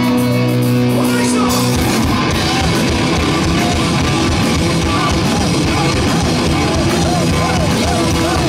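Hard rock band playing live and loud, with electric guitars, bass, drums and vocals. A held note breaks off about two seconds in, and the full band drives on with pounding drums and guitar lines that bend near the end.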